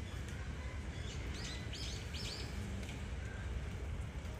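A bird chirps three times in quick succession about a second and a half in, over steady low background noise.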